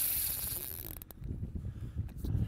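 Spinning reel's drag buzzing and clicking as a hooked northern pike pulls line off against it, mostly in the first second, followed by low wind rumble with a few clicks.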